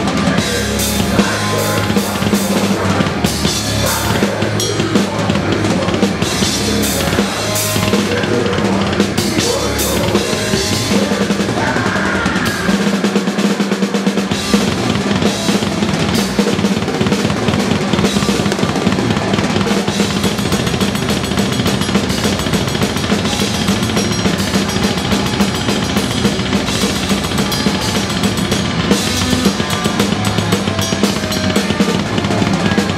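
Drum kit played fast and hard in a live death metal set, heard close from behind the kit: dense bass drum and snare strokes with frequent cymbal crashes, over the rest of the band's amplified instruments.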